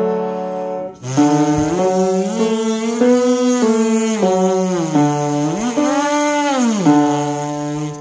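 A keyboard sounds a reference note. A brass player then buzzes his lips through a practice pattern on D: rising steps through a triad and the sixth, falling back down, then sweeping up to the high octave and back to a held low note.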